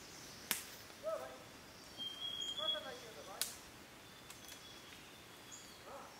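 Quiet forest: two sharp snaps, two short falling calls and a thin high bird whistle.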